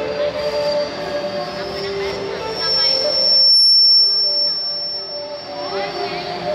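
Yike stage singing and instrumental music played over a hall PA, with a high, steady whistling tone laid over it through the middle; the whistle is loudest about three and a half seconds in, when the singing and music briefly drop out.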